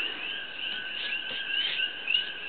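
A steady background chorus of calling animals: a continuous high trill with many short chirps repeating over it.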